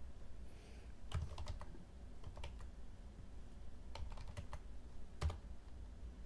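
Computer keyboard being typed, keystrokes coming in short irregular clusters, with one louder key strike about five seconds in.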